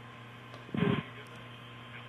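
Steady hum and hiss of a launch-control audio feed with a faint steady tone, broken about three-quarters of a second in by one brief, loud blip of about a quarter second.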